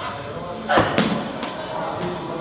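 Loaded barbell with bumper plates dropped onto a lifting platform: one loud slam a little before the middle, then two smaller bounces, over the murmur of a large hall.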